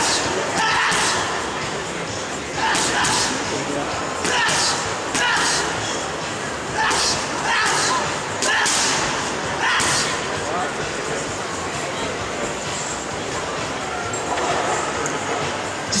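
Boxing gloves striking focus mitts during pad work: sharp smacks, singly or in quick combinations of two or three, about once a second for the first ten seconds, then fewer.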